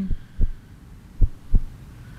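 Heartbeat sound effect of a quiz show's thinking pause: low double thumps, about one pair a second, over a faint hum.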